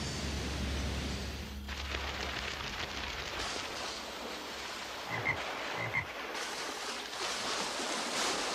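Cartoon sound effects of rushing water from a waterfall and river, with a frog croaking twice, about five and six seconds in.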